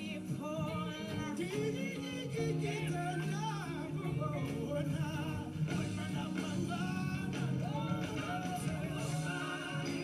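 Live band music with singing, played through a television's speaker: a wavering sung melody over steady sustained low notes from the band.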